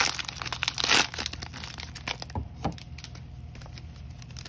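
Foil baseball card pack wrappers crinkling and being torn open by hand, with the loudest rip about a second in and quieter crackling of the wrapper after it.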